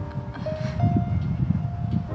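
Soft background music with long held notes and a few higher sustained tones, over a low rumble.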